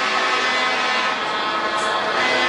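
Heavy truck tractor unit moving off down the course, its engine running steadily.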